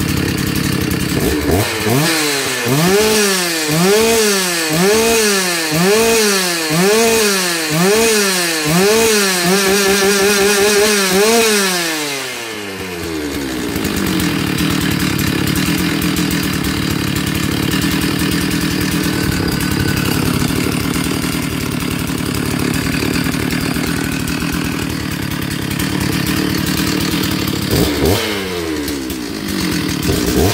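1993 Stihl 066 Magnum chainsaw's 92 cc two-stroke engine being revved up and down about once a second, then held at high revs for a couple of seconds before dropping to a steady idle. Near the end it is revved up once more.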